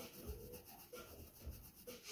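Faint scratching and rubbing of a pencil moving across sketchbook paper as lines are drawn.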